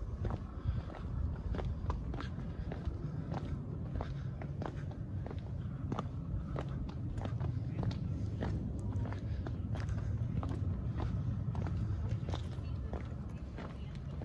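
Footsteps on a cobblestone path: irregular short clicks and scuffs of shoes on stone, several a second, over a steady low rumble.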